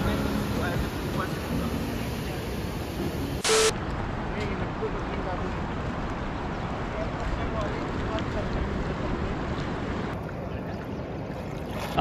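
Steady rush of the Narmada's water pouring over the Dhuandhar Falls. About three and a half seconds in, a short loud burst breaks it, and a slightly quieter, steady rush of fast-flowing river water follows.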